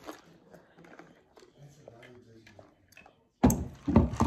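Quiet sipping of iced coffee through a plastic tumbler straw, with faint small clicks; near the end a loud noisy rush lasting under a second, like a breath or handling noise close to the microphone.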